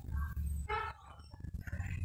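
Crowded shop ambience: a steady low rumble with faint, indistinct voices of shoppers, one short voice-like call just under a second in.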